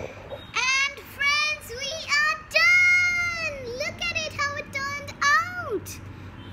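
A young girl singing a short tune in a high voice, a run of separate notes with one long held note about halfway through and a sharply falling note near the end.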